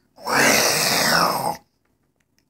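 A young boy's pretend dinosaur roar: one loud, raspy, breathy roar lasting about a second and a half.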